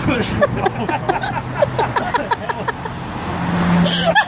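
A car engine running close by, a steady low hum that grows louder towards the end, with many short quick chirps over it.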